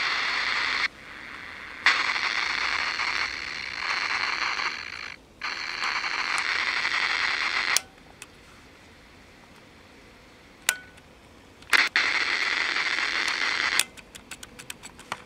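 Vega RP-240 portable radio's loudspeaker giving a hiss of static with no station. The hiss cuts out abruptly and comes back several times as the push-button switches are worked, with a couple of sharp clicks while it is off.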